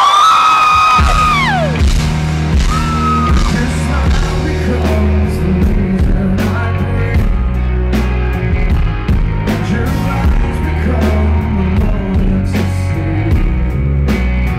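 Crowd whoops and screams dying away in the first two seconds as a live rock band starts a slow song with a sustained low bass. A steady drumbeat comes in about five seconds in.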